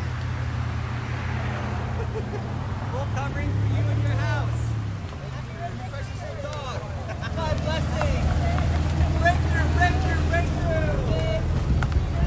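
Cars crawling past close by one after another at walking pace, their engines running low with a steady hum. People's voices call out over them, getting louder from about seven seconds in.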